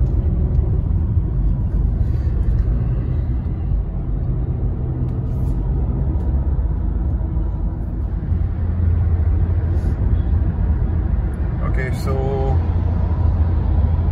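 Low road and engine rumble inside the cabin of a 2020 Honda City petrol sedan at highway speed. It grows louder from about eight seconds in as the car accelerates toward 100 km/h.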